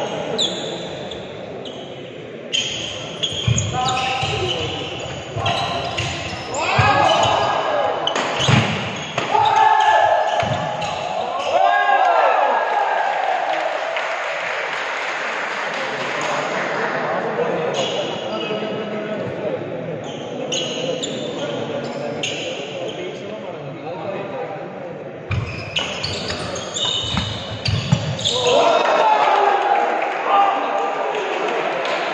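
Badminton rally: repeated sharp racket strikes on the shuttlecock, echoing in a large sports hall, mixed with players' and spectators' voices.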